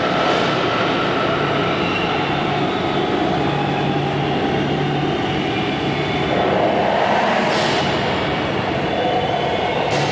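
Loud soundtrack of an on-ice projection show playing over an arena PA: a dense, rumbling passage with a whooshing sweep about seven and a half seconds in.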